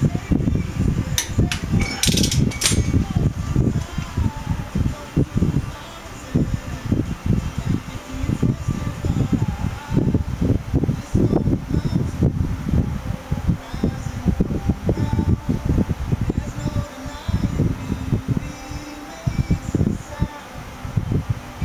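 Wind buffeting the microphone: a heavy, gusting low rumble throughout. A few sharp metallic clicks and clinks in the first three seconds.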